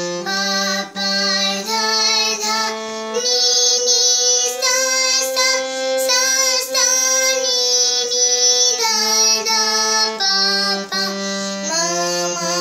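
Young girl singing a melody while accompanying herself on a harmonium. The notes are held and move in steps from one pitch to the next.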